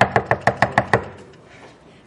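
Knuckles rapping quickly on a door: a fast, even run of about seven knocks a second that stops about a second in.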